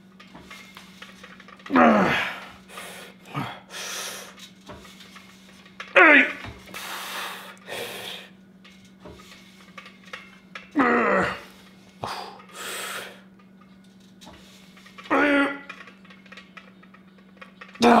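A man grunting with effort on each rep of a heavy lat pulldown: a strained groan falling in pitch about every four seconds, four times, with loud heavy breaths between them.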